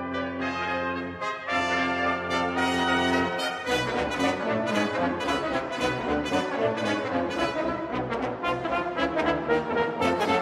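Brass ensemble of trumpets, trombones and tuba playing. It opens with held chords over sustained low notes, broken off briefly about a second in. About three and a half seconds in it moves into a busier passage of quicker notes.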